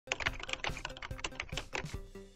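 Typing on a computer keyboard: a quick, irregular run of key clicks.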